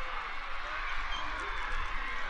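Soccer match field ambience: a steady wash of distant crowd and field noise with faint far-off voices, over a low rumble.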